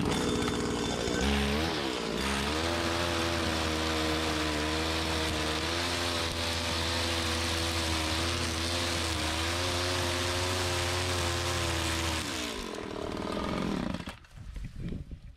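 Two-stroke Stihl string trimmer revving up about a second in and running at full throttle as its line cuts grass along a fence line, the pitch wavering slightly under load. Near the end it drops back to idle.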